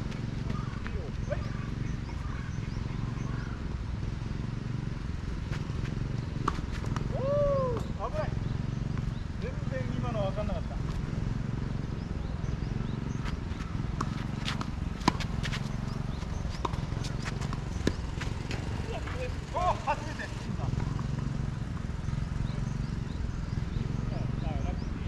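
Tennis ball strikes and bounces on a clay court, heard from a distance as a run of sharp clicks in the middle, over a steady low rumble of wind on the microphone.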